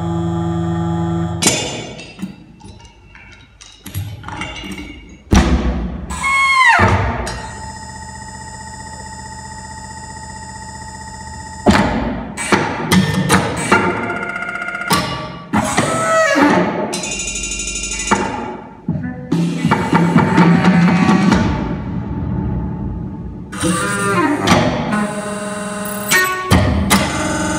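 Contemporary concert music for baritone saxophone, percussion and electronics, played in short abrupt gestures that start and cut off suddenly. Falling pitch glides come about six seconds in and again later, and a held chord of several tones sounds between about eight and twelve seconds.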